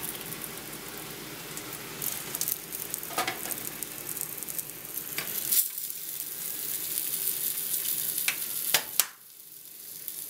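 Arepas frying in hot oil in a skillet: a steady sizzle, broken by a few sharp clicks of metal tongs against the pan and baking tray as they are lifted out. The sizzle drops away suddenly about nine seconds in.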